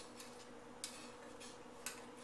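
A metal knife clicking twice against the side of a metal loaf pan, about a second apart, as it is worked around the edge to loosen a baked banana bread from the pan.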